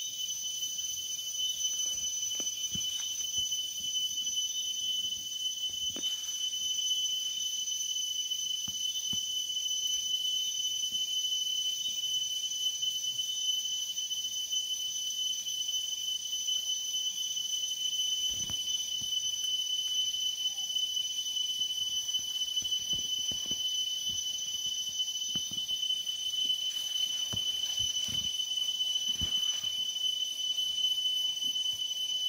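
A steady, high-pitched chorus of insects, probably crickets, drones without a break. Faint clicks and rustles come at scattered moments as the bean vines are handled.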